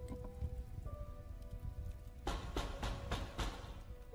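Liquor poured from a bottle into a glass, glugging in about five quick bursts in the second half. Soft sustained film-score music plays underneath.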